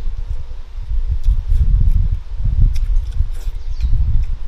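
Close-miked chewing of a mouthful of red-braised pork belly and rice: irregular soft, low mouth thuds, with a few faint small clicks.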